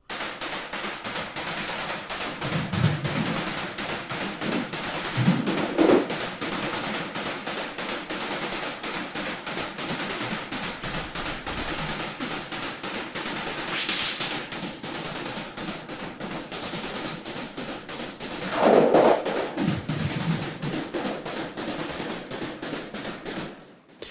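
Synthesized noise percussion from the Zebra 2 soft synth: filtered white and pink noise hits in a rapid, even arpeggiated pattern with delay. The tone shifts a few times as a high-pass EQ is adjusted to take out some of the low end.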